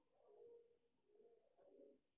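Near silence, with a faint low cooing of a bird in the background, heard briefly about half a second in and again later.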